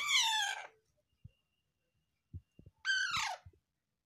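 Young Alexandrine parakeet giving two short, harsh squawks that fall in pitch, one at the very start and one about three seconds in, while it is being hand-fed a biscuit. A few faint soft taps come between the calls.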